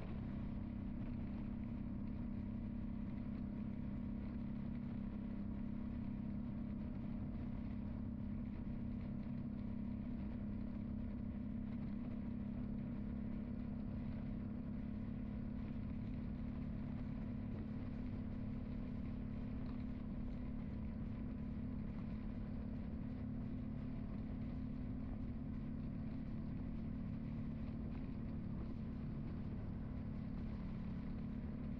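A car driving at a steady speed on a paved road: a constant engine drone with tyre and road noise, unchanging throughout.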